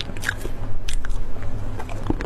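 Close-miked eating sounds: a person chewing a soft, moist dessert cake, with many short, sticky mouth clicks and small crackles over a steady low hum.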